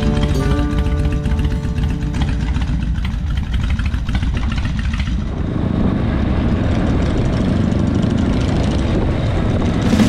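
Background music with held notes over the low rumble of Harley-Davidson V-twin chopper engines. About halfway through the music fades out, leaving the steady engine rumble and road noise of a chopper riding along.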